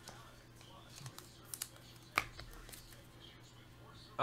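A few faint short clicks and taps over quiet room tone, the sharpest about two seconds in.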